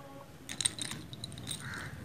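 Faint handling noise: a few light clicks and small rattles as the camera is moved over the book page, with a low hum underneath.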